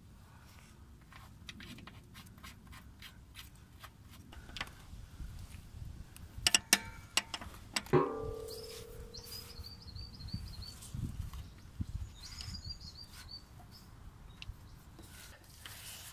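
Clicks and knocks of a metal wrench as a transfer case drain plug is threaded back in and done up tight, with a short metallic ring about eight seconds in. A bird chirps twice in the background.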